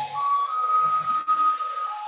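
Background music from an animated explainer: held tones stepping between a few pitches, with low notes underneath.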